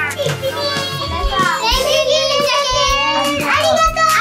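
Excited children shrieking and shouting over background music, with one long high squeal in the middle.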